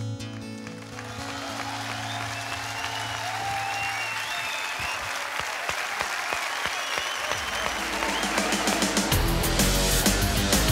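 Studio audience applauding, cheering and whistling as the last acoustic guitar chord of the song dies away. Near the end, loud outro jingle music with heavy bass comes in over the applause.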